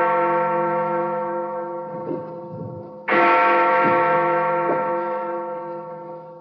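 Large clock-tower bell striking: one stroke rings on and fades from just before, and another strikes about three seconds in, each ringing out slowly.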